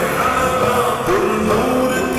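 A naat (Urdu devotional song) sung by a male voice, slowed down and drenched in reverb, with long held notes that slide between pitches.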